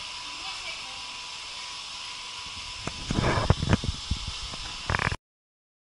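Steady background hiss with a faint steady tone. About three seconds in comes a short cluster of rustling and knocking handling noises, and a brief one follows near five seconds; then the sound cuts off abruptly into silence.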